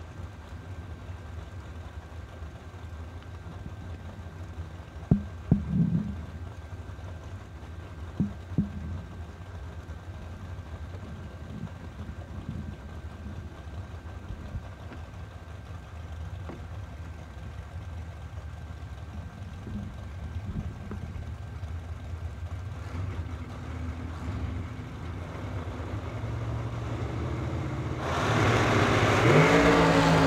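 Drag racing dragster engines idling at the start line, with a few short throttle blips about five and eight seconds in. The engine noise builds gradually, then near the end the engines go to full throttle and get much louder as the cars launch.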